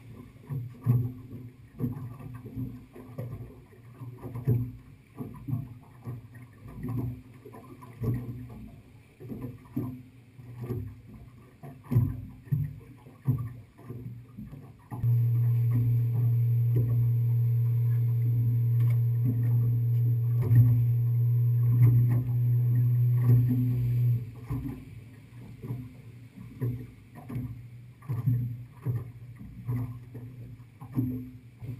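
Small waves slapping irregularly against an aluminium boat hull. A steady low motor hum starts suddenly about halfway through and cuts off about nine seconds later.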